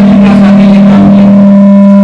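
Public-address microphone feedback: a loud, steady low howl from the hall's speakers, holding a single unwavering pitch.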